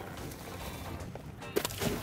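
A baited stone crab trap splashing into the sea as it is thrown overboard, a short burst of noise near the end, over steady background music.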